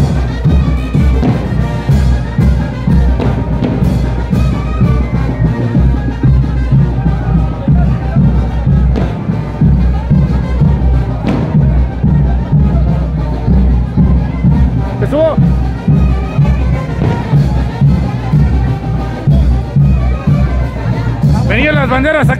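A live brass band playing a son de chinelo, the bouncing dance music of the chinelo brinco, with a steady, heavy bass beat under the brass melody. A street crowd is heard faintly beneath it.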